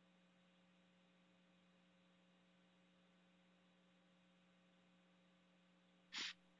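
Near silence with a faint steady electrical hum.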